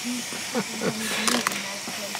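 Hot oil sizzling steadily in a small pan as poppadom pellets deep-fry and puff into balls. Faint voices can be heard, and a few sharp metallic clicks come about midway.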